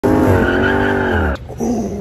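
Car tires squealing in a loud, steady screech whose pitch falls slightly, cutting off suddenly about 1.4 s in. A quieter stretch follows.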